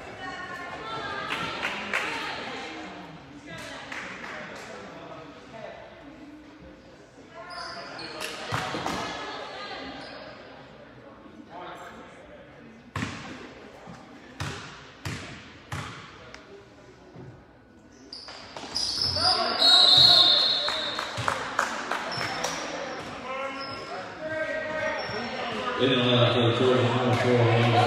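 A basketball bounced several times on a hardwood gym floor, the strokes echoing in the hall and bunched in the middle. Voices call out at intervals.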